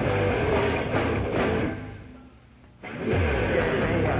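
Rock band playing live with electric guitar and drums. About halfway through, the music drops away to a brief lull, then the full band comes back in together a little before three seconds in.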